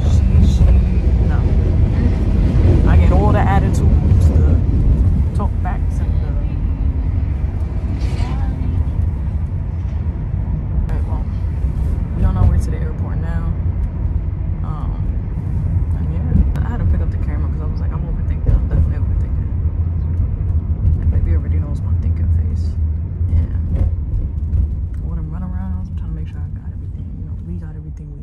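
Steady low rumble of a moving car heard from inside the cabin, road and engine noise, with a few short stretches of quiet voice.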